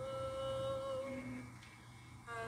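A voice humming one long held note that fades out a little past halfway, heard through a phone's speaker.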